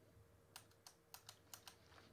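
Faint keystrokes on a computer keyboard: about half a dozen quick, separate key taps starting about half a second in.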